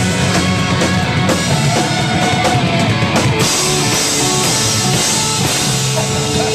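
Live rock band playing loud: electric guitars, bass and a drum kit with crashing cymbals.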